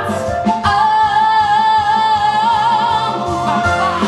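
A female voice in a musical-theatre song holds one long high note with vibrato over instrumental accompaniment. The note starts about half a second in and breaks off shortly before the end.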